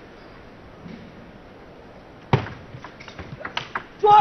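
Celluloid table tennis ball clicking off the paddles and table: one sharp hit a little past halfway, then a quick run of lighter clicks, a few per second, near the end as a short rally is played. A low arena hum underneath.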